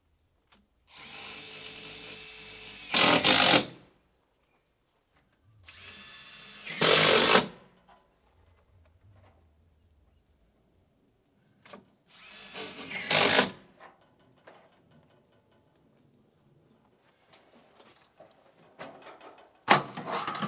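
Cordless drill driving screws into corrugated sheet-metal panels: three runs of a couple of seconds, each ending in a short, louder spell as the screw bites and seats, and a fourth starting near the end.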